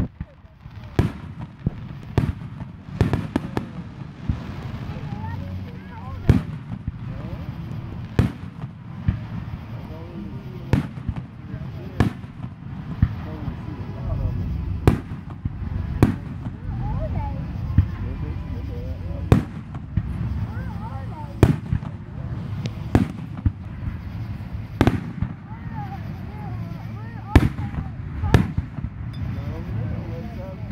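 Aerial fireworks display: shells bursting overhead in sharp bangs, roughly one a second at irregular spacing, with a continuous low rumble of further bursts and echoes between them.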